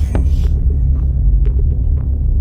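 Minimal deep tech electronic track: a loud, continuous deep bass with a few faint percussive ticks over it.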